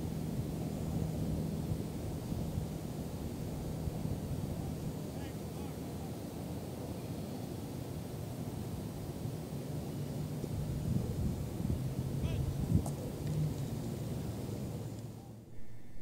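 Steady low outdoor rumble of wind on the microphone, with a faint steady hum of distant traffic underneath.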